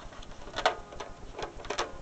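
A sheet of paper rustling and crinkling as a hand lifts it off a banjo head, in a few short crackles, the loudest about two-thirds of a second in.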